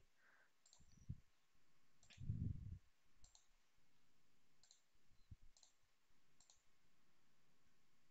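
Faint computer mouse clicks, about six spread out over several seconds, against near silence, with a short low sound about two seconds in.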